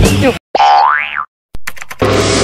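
Background music stops abruptly, then a short boing-type sound effect plays with its pitch rising steeply, followed by a moment of silence and a few quick clicks.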